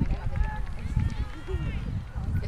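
Faint voices of people talking and calling at an outdoor soccer match, under a gusty low rumble of wind on the microphone.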